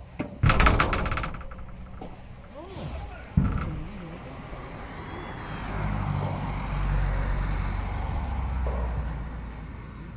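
A padel racket strikes the ball about half a second in, followed at once by a rattling run of clicks, and a second sharp hit comes near the middle. After that a steady low rumble sets in for a few seconds.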